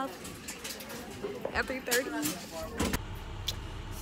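Voices talking briefly, then after a cut about three seconds in, the steady low rumble of a school bus running, heard from inside the bus.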